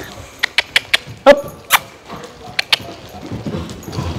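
A handful of sharp, short clicks, with a short voiced cluck a little over a second in: a lunging trainer clicking his tongue to drive the horse on. Soft, dull hoofbeats of the horse trotting on an arena's sand surface come through near the end.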